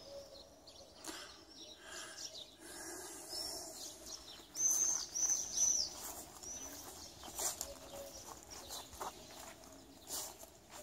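Small birds chirping, with a quick run of short, high repeated chirps about halfway through.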